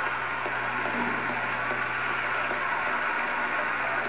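Steady audience applause from a TV broadcast, heard through the television's speaker, with a constant low electrical hum underneath.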